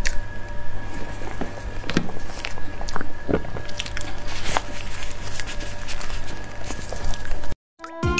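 Close-miked, squishy chewing of a soft bite of durian mille-crepe cake, with scattered small mouth clicks over a steady background hum and tone. Near the end the sound cuts off abruptly and a bright chiming jingle begins.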